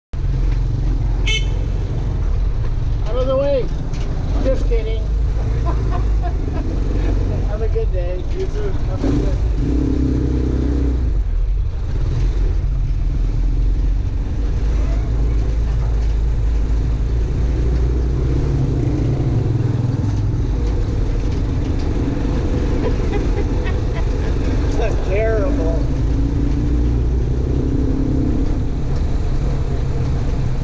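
Motorcycle tricycle's engine running steadily, heard from inside the sidecar cab with road rumble. Short voice-like calls rise above it a few times.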